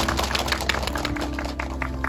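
A small group clapping, scattered claps that thin out near the end, over background music with sustained tones.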